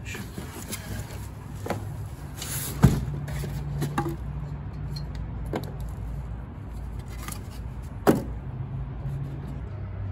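Handling noise as a stainless steel bench scale frame and its packing are moved about in the box: scattered knocks and bumps, the two sharpest about three and eight seconds in, over a steady low hum.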